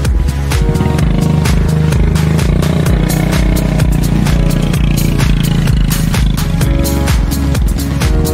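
Royal Enfield Bullet 350's single-cylinder engine running as the bike is ridden over loose desert dirt. It comes in about half a second in and drops away near the seven-second mark, under electronic background music with a steady beat that is the loudest sound throughout.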